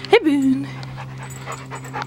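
Yellow Labrador panting as it walks up close, with a brief vocal sound that rises and falls just after the start, over a steady low hum.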